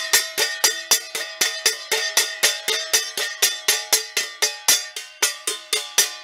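A ringing metal object, bell- or pan-like, struck rapidly and repeatedly, about four or five clanging strikes a second. It is a deliberate racket made to test how a young dog reacts to sudden noise.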